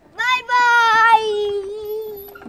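A young child's voice giving one long, drawn-out sung call, held on a single high note and sagging slightly in pitch toward the end.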